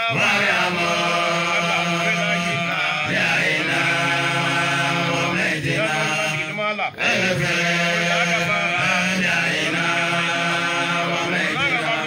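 Men chanting an Islamic devotional song into microphones, in long held, drawn-out phrases of a few seconds each, with brief breaths between them.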